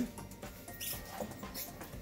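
Faint rustling of a paper bag as a foam sign is pushed down into it, with a brief louder scrape about a second in.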